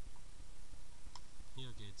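Scattered sharp clicks from paintball markers being fired, one clearer and louder shot about a second in.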